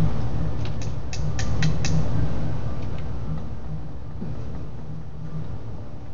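About six light, sharp taps in quick succession in the first couple of seconds, made by tapping the plastic wheels of a small yeast-powered syringe car to coax it into rolling, over a low steady rumble.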